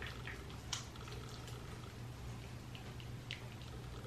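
Faint wet squishing of hands rubbing soapy lather over a face, with a few soft wet clicks, over a steady low hum.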